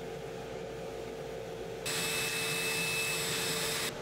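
Laser cutter at work on MDF: a steady blowing hiss with a faint high whine, cutting in suddenly about halfway through over a low steady hum.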